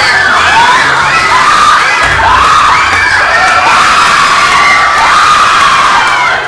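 A group of children shouting and screaming together, loud and unbroken, many voices overlapping.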